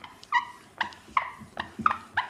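Whiteboard marker squeaking against the board as equations are written, a short squeak with each stroke, about five in two seconds.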